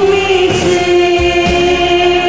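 Two women singing a duet over a karaoke backing track, holding one long note through a steady beat.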